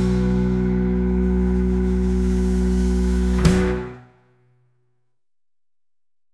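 Background music: a song's held closing chord, with one last accent about three and a half seconds in, fading out to silence about four seconds in.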